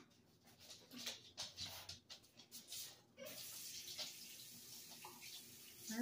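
Faint scattered ticks of candy sprinkles dropping onto a cake and a steel counter. From about three seconds in, a faint steady hiss like running water.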